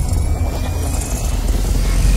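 Cinematic logo-intro sound effect: a deep, steady rumble under a hissing noise, with a faint rising tone.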